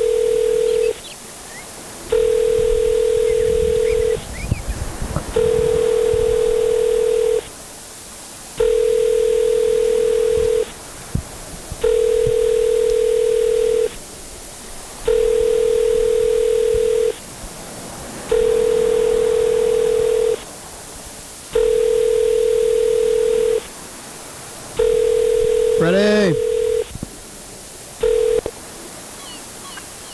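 Telephone ringback tone heard over the line while an outgoing call rings unanswered: a steady low tone about two seconds long, repeating about every three seconds. The last ring is cut short near the end, and a brief voice sound comes over one ring shortly before it.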